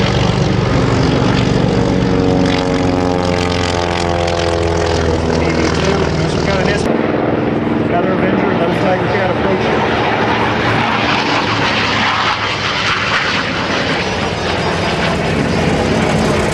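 Twin radial piston engines of a WWII Lockheed Navy patrol bomber making a low pass, a loud propeller drone that falls in pitch as the plane goes by. About seven seconds in the sound cuts abruptly to a thinner, more distant background with voices and no low engine drone.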